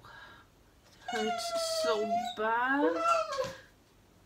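A cat meowing: two long meows of about a second each, the second wavering in pitch.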